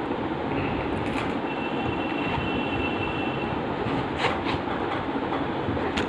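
Steady low rumbling background noise, with a few light clicks about a second in and again around four seconds in.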